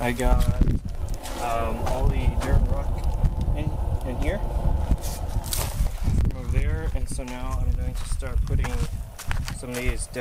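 Indistinct talking, with a steady low rumble and scattered knocks underneath.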